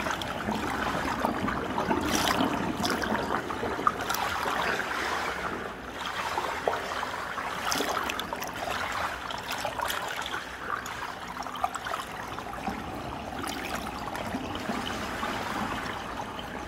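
Jacuzzi water running and lapping steadily, with a few brief small splashes.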